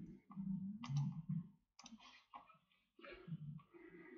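Computer keyboard keys clicking in short, irregular runs of keystrokes as someone types.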